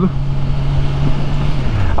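Kawasaki Ninja 1000SX's inline-four engine running steadily at light throttle at low road speed, with wind rushing over the rider's microphone. The engine note dips slightly near the end.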